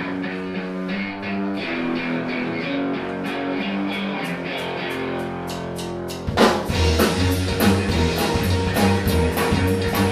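Live rock band starting a song: an electric guitar plays alone for the first few seconds, with short ticks building, and the drums come in loudly with the full band about six seconds in.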